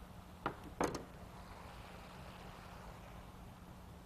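Two chef's-knife strikes on a plastic cutting board, chopping parsley, about half a second in and a third of a second apart. After them there is only faint room tone with a steady low hum.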